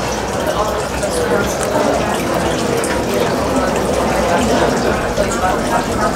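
Steady background chatter of many diners talking at once in a restaurant, overlapping voices with no distinct words.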